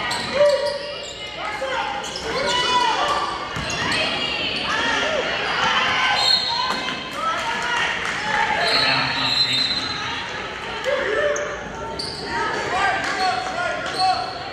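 Basketball game in a school gym: indistinct voices of players and people courtside calling out, echoing in the hall, with a ball bouncing on the hardwood floor now and then.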